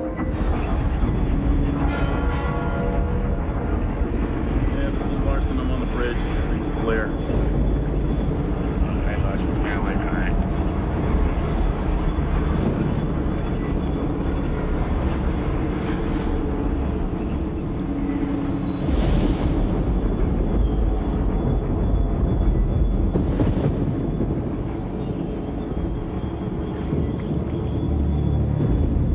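Film soundtrack mix: music together with voices over a steady low rumble, with scattered short sharp sounds.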